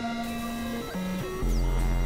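Experimental electronic synthesizer drones: layered held tones that jump from pitch to pitch in abrupt steps. A deep bass note comes in about one and a half seconds in.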